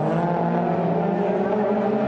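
Touring-car engines running hard as the race pack goes by: a steady, layered engine note made of several tones at once.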